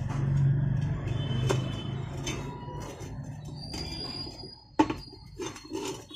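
A mechanic's hands handling a scooter tyre, inner tube and steel wheel rim: rubber rubbing and several knocks and clicks, the loudest a single sharp knock about five seconds in. A low rumble underneath fades out after about three seconds.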